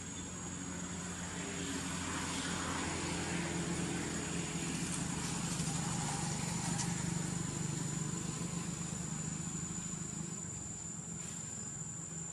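A low motor hum swells over several seconds and fades again, as of a vehicle passing at a distance, under a steady high-pitched insect drone.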